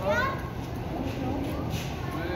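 A young child's high-pitched voice calling out with a rising pitch at the very start, then only faint voices over steady background noise.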